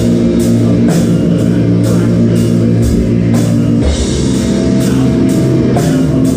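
Metal band playing live without vocals: distorted guitars and bass hold sustained low chords over a slow drum beat, with cymbal hits about twice a second. The chords change about four seconds in.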